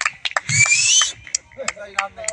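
A few scattered handclaps from a small audience, with a short rising whistle from the crowd about half a second in.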